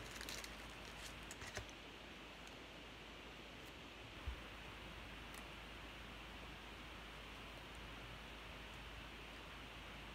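Faint rustling and light clicks of a trading card being slid into a soft plastic sleeve by hand. A few small clicks come in the first couple of seconds and one about four seconds in, over a steady low hiss.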